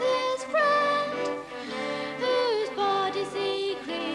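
Children's school choir singing, a girl's voice carrying the melody at the microphone; held notes that slide down in pitch a little past halfway.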